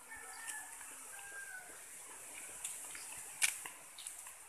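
Faint outdoor village ambience with a few short bird calls, in the first half, and a steady high hiss. A single sharp click about three and a half seconds in is the loudest sound.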